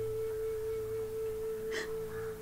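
A single sustained tone from the drama's background score, held steady at one pitch over a low hum, with a short breathy sound near the end.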